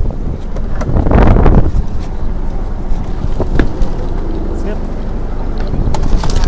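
Wind rumbling on the microphone, with a louder burst about a second in and a couple of sharp knocks a little past the middle.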